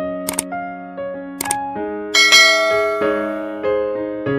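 Gentle piano music with two sharp mouse-click sound effects, about a third of a second and a second and a half in, then a bright bell-like chime about two seconds in: the sound effects of a subscribe-button animation.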